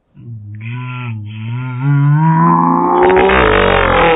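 A woman's long, drawn-out groan of exasperation, starting low and gradually rising in pitch and loudness until it breaks into a strained, raspy yell near the end.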